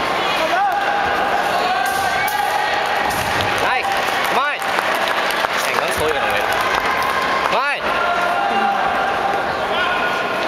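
Many voices talking at once in a large sports hall, with occasional thuds of feet landing and stamping on the carpeted competition mat.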